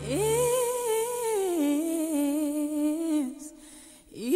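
A singing voice holding one long wordless note over light backing music: it glides up into the note, holds it, steps down a little after about a second and a half, and fades out just after three seconds.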